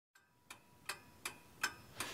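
A clock ticking steadily, a little under three ticks a second, starting about half a second in.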